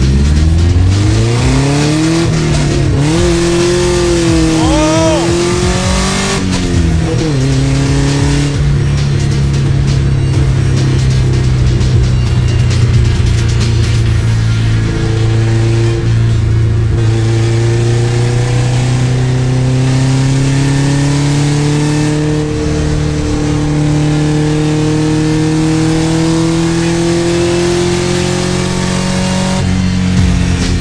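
Subaru flat-four engine in a ZAZ-968M, heard from inside the cabin, pulling under full acceleration. The revs climb over the first six seconds and drop sharply with a gear change about seven seconds in. They then rise slowly and steadily in a long, tall gear of the diesel gearbox as the car works toward its top speed.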